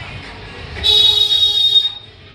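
A loud, high buzzing tone that starts a little before the middle and lasts about a second, over a low steady rumble.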